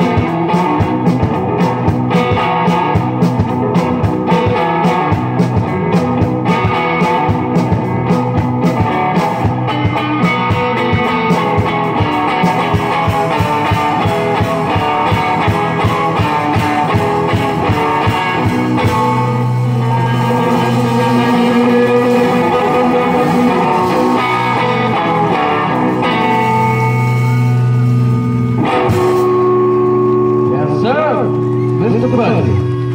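Live blues played on guitar with a drum kit. The drum strokes thin out in the second half, where long held guitar chords ring out to close the song.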